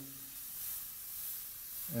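Airbrush spraying fluorescent pink paint at high pressure onto a t-shirt: a steady hiss of air and paint. The high pressure drives the pink into still-wet green paint.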